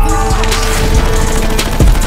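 Action-film trailer sound mix: dense crashing and splintering effects over a held music note, with a heavy hit near the end.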